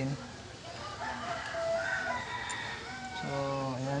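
A bird's call, long and wavering, from about a second in, fainter than the short bit of speech that follows near the end.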